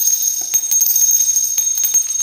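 Bells shaken in a steady jingle with a high, sustained ring and many small strikes through it, as an intro sound effect.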